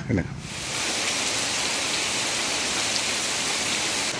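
Heavy rain falling on leafy shrubs and trees, a steady even hiss that starts abruptly about half a second in.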